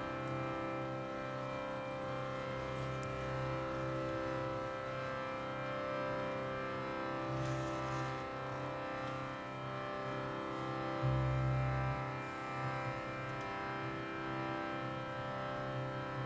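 Harmonium holding a steady sustained drone chord in an Indian devotional kirtan, with a deeper note swelling in for about a second around eleven seconds in.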